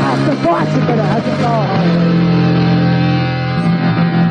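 UK punk rock song with electric guitars: a voice singing over the band for the first second and a half, then a held guitar chord.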